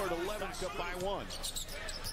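Basketball game broadcast audio: a voice in the first second or so, then arena crowd noise and a basketball being dribbled on the court.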